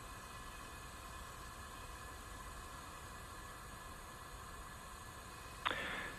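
Faint steady hiss of an open audio channel with no distinct event. Near the end a radio loop keys up with a short burst just before a voice comes on.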